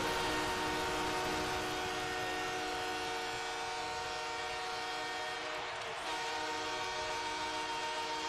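Hockey arena goal horn sounding to signal a home Los Angeles Kings goal, over a cheering crowd. One long steady blast breaks off briefly about five and a half seconds in, then sounds again.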